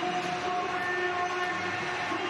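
A loud, horn-like chord of several held tones, with a higher note joining about a second in, over stadium crowd noise just after a goal: stadium goal horn sound.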